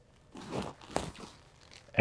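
Rustling and crinkling of a folded pop-up softbox's fabric being handled, for about a second, with a sharp crackle about a second in.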